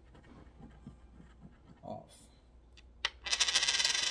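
A coin lands on a wooden desk about three seconds in with a sharp click, then rattles and spins for about a second before coming to rest. Before that there is only faint handling of a paper sticker sheet.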